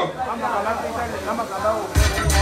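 The hip-hop backing beat drops out, leaving voices talking over a hiss from the PA. Right at the end a hard hit brings the beat back in.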